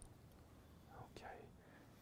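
Near silence: room tone, with a softly spoken "okay" about a second in.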